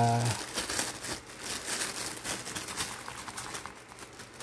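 Clear plastic packaging crinkling irregularly as hands handle it and pull it off a bag.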